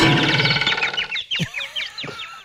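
Cartoon sound effects for a boxing-glove punch: a sudden dense hit, then a run of short, high chirping glides.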